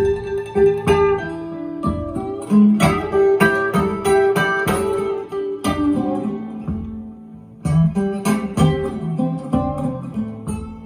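Blues acoustic guitar instrumental intro, picked single notes and strummed chords that ring on, played back through KEF Reference 205 floorstanding loudspeakers and picked up in the listening room.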